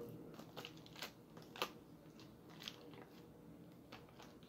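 Tight plastic wrap being picked at and peeled off a small bottle: faint, scattered crinkles and crackles, with a sharper crackle about one and a half seconds in.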